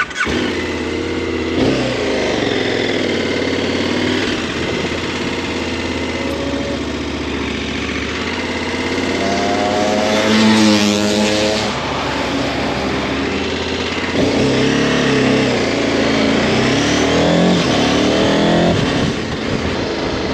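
KTM Super Adventure's V-twin engine pulling away and accelerating, its revs rising and dropping several times as it goes up through the gears, then running at road speed.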